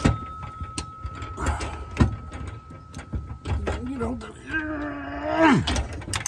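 Metal clicks and knocks from hand tools on the shifter linkage's steel bracket as its bolt is tightened. A drawn-out wordless voice sound comes about five seconds in.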